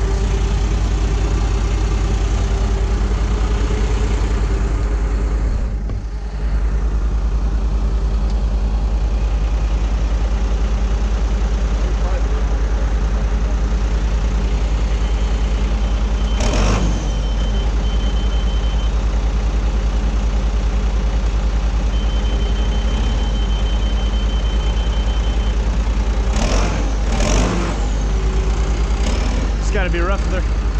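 Diesel engine of a John Deere 210LE loader-tractor running steadily, with a brief dip about six seconds in. A rapid, high electronic beeping sounds twice in the middle, each run lasting a few seconds: the machine's warning beeper.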